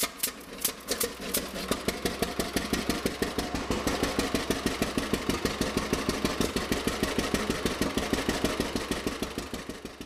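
Vintage John Deere two-cylinder tractor engine, just started, running with a fast, even popping beat that picks up speed over the first couple of seconds and then holds steady. It fades out near the end.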